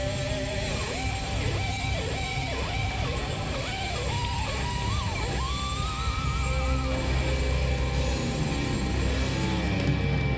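Live instrumental band music led by electric guitar: a lead line of bent, sliding notes with vibrato over a steady bass-heavy backing.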